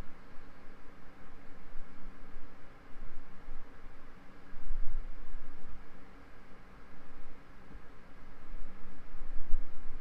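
Room noise: a steady hiss with a faint low hum, and an uneven low rumble that swells and fades, with no clear distinct event.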